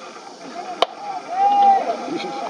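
A single sharp crack as the pitched baseball strikes, just under a second in, followed by voices calling out from the stands.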